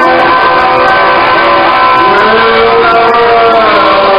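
A live post-punk band playing loudly, recorded from the audience: sustained, overlapping ringing tones, with one held note bending up about halfway through and sliding back down near the end.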